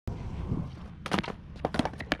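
Skateboard wheels rolling on concrete, then a sharp tail pop and a quick run of wooden clacks and knocks as a fakie bigspin attempt fails and the board strikes the skater's shin and clatters onto the ground.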